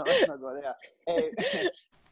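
A voice in two short bursts, the second starting about a second in, with a brief pause between them.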